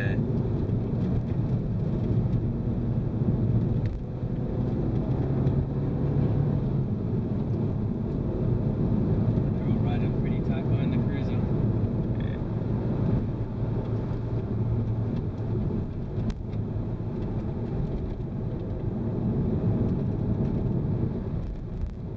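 Renault Mégane RS 250's turbocharged 2.0-litre four-cylinder running under way, heard from inside the cabin with tyre and road noise, its note rising and falling as the car accelerates and eases off through the bends.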